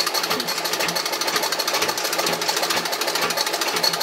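Antique Singer 27 treadle sewing machine stitching steadily, its needle and shuttle mechanism giving a fast, even clatter as it runs a test seam at a newly set stitch length.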